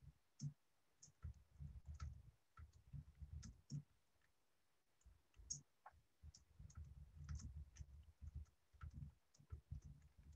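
Faint, irregular clicks and soft low thumps over a near-silent call line, a few each second with short gaps around three and five seconds in.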